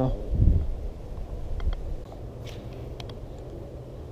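Low steady wind rumble on the microphone, with a short thump about half a second in and a few faint clicks later.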